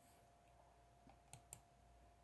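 Near silence with two short, faint clicks about a second and a half in, a fraction of a second apart, over a faint steady tone.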